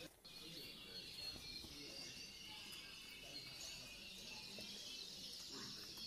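Faint, steady background chorus of many caged canaries chirping and singing together, with a brief dropout just after the start.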